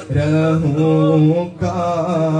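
A man's voice chanting an Urdu supplication (dua) in long, held melodic phrases into a microphone, with a short breath between two phrases about a second and a half in.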